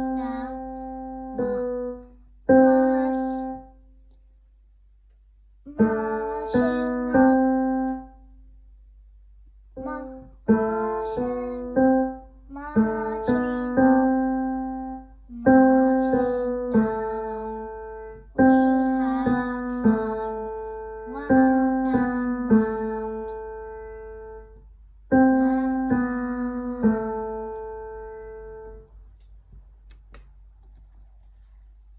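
A child playing a slow, simple melody on the piano, single notes and small chords that each ring and fade, in short phrases broken by pauses of a second or two.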